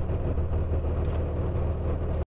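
Small fishing boat's engine running steadily with a low, even hum.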